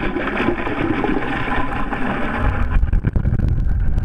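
Muffled hum of a boat motor running, heard through the water by an underwater camera, with a low rumble that grows stronger a little past halfway.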